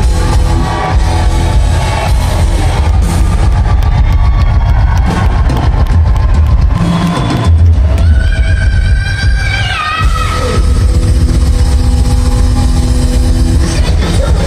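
Hard rock band playing live and loud, with a heavy drum and bass beat. About eight seconds in, a high held line bends downward over a couple of seconds.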